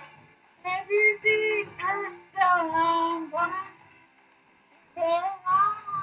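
A man singing unaccompanied in held, sliding phrases, with two short silent breaks between them.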